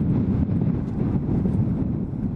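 Sandstorm wind buffeting the microphone: a loud, steady low rumble.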